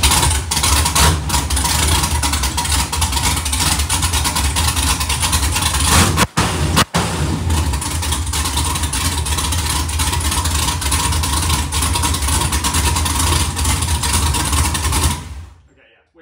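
Carbureted 365-cubic-inch LS V8, built from a 6.0 LQ4, running loud through open long-tube headers with no mufflers. The sound drops out sharply twice, briefly, a little past six and seven seconds in, and the engine shuts off and dies away about fifteen seconds in.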